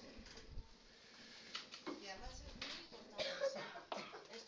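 Faint, indistinct speech in short snatches, too quiet for the words to be made out.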